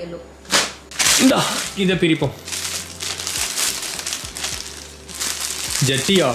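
Plastic courier mailer bag crinkling and rustling as it is pulled open by hand.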